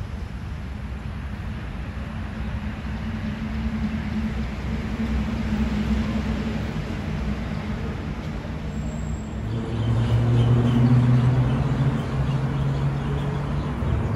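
Low engine hum of motor traffic. A louder vehicle passes close, loudest about ten seconds in and fading toward the end.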